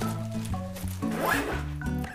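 A zipper on a black nylon travel bag pulled once, about halfway in, over background music.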